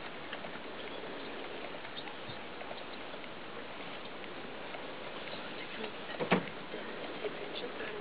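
Steady outdoor background hiss with scattered faint ticks, and one louder sharp knock a little past six seconds in.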